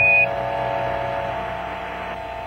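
A short high beep right at the start, the Quindar tone that marks the end of a Mission Control transmission on the air-to-ground radio link, followed by steady radio hiss carrying a faint steady hum of several tones that slowly fades.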